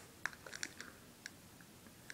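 A few faint, scattered clicks and ticks of handling as a chocolate bar in its foil-lined wrapper is moved up close.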